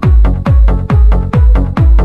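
Progressive electronic dance track playing: a four-on-the-floor kick drum about twice a second, each kick dropping in pitch, under steady synth chords.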